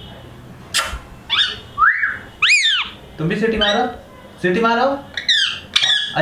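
Indian ringneck parrot whistling: several short, high whistles and calls that rise and fall in pitch in quick succession, with a man's voice briefly between them.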